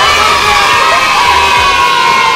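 A group of young girls cheering and screaming together, one long high-pitched scream held steady for about two seconds over the other voices.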